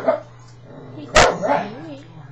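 A very young puppy giving short, sharp yips: one right at the start and a louder one just over a second in, followed by a brief wavering whine.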